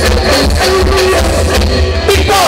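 Live band music played loud: electric guitars playing a melody over drums and a heavy bass.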